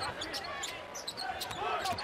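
Basketball bounced on a hardwood court in a series of sharp strokes, over the steady murmur of an arena crowd.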